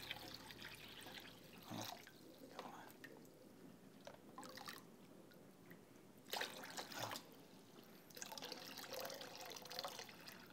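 Water pouring from a plastic pitcher into a plastic tub, a faint trickle and splash, with a few brief louder bursts, the strongest about six seconds in.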